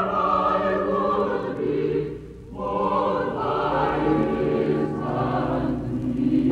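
Choral soundtrack music: a choir of voices holding long sustained chords, with a brief lull about two seconds in before it swells again.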